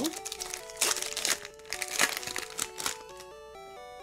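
Foil wrapper of a Pokémon booster pack crinkling and crackling as it is torn open by hand, over background music with stepped notes. The crinkling stops about three seconds in, leaving only the music.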